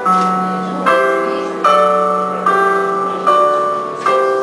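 Slow piano music: five chords struck a little under a second apart, each left to ring and fade before the next.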